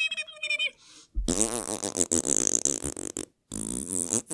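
A man making a mocking noise with his mouth: a brief held tone, then a long raspberry blown through pursed lips from about a second in, lasting about two seconds, and a second, shorter raspberry near the end.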